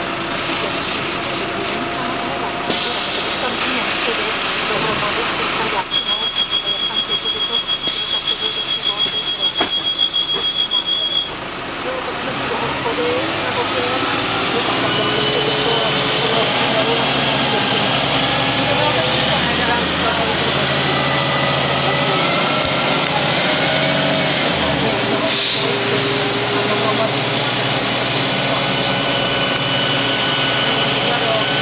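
Cabin sound of a Karosa B 961 city bus with its diesel engine running. A steady high two-note electronic tone sounds for about five seconds and cuts off suddenly. Then the engine note rises and falls through the gears as the bus moves off and accelerates, with a short hiss near the end.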